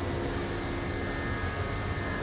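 Steady background hum and hiss with a few faint held tones, moderately loud and unchanging.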